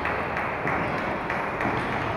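Scattered light taps of table tennis balls on tables and bats around a large sports hall, over a steady hall murmur.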